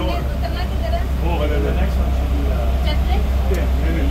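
Underground train running through a tunnel, a steady low rumble heard from inside the front car, with people talking faintly in the car.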